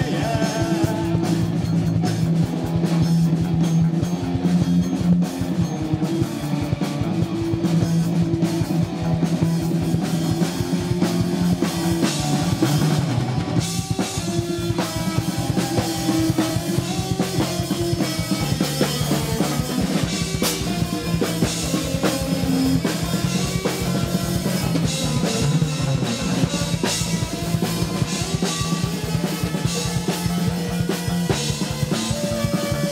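Live post-punk band playing an instrumental passage: a driving drum kit with kick and snare, a bass guitar holding low notes, and electric guitar, loud and unbroken.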